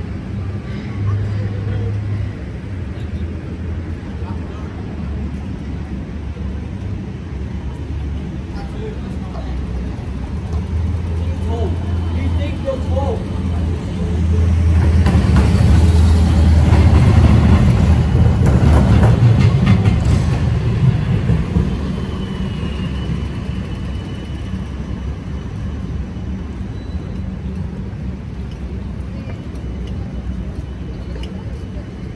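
City street traffic: a steady low engine hum, with a vehicle passing close that is loudest about halfway through and fades a few seconds later. Passers-by talk in the background.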